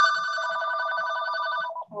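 A telephone ringing: one ring of about two seconds with a fast, even trill, cut off just before a voice starts speaking.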